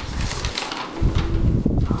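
Paper rustling and handling as sheets are passed back between desks, with irregular low bumps of movement, busiest from about a second in.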